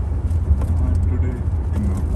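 Steady low rumble of a vehicle, with faint voices in the background.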